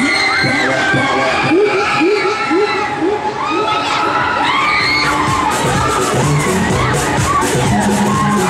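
Riders on a spinning Break Dance ride screaming and shouting, many voices overlapping, over ride music that takes on a steady beat about halfway through.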